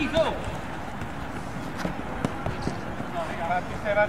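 Players' shouted calls on a five-a-side football pitch, with a few light thuds of the ball being kicked and running footsteps on the artificial turf in between.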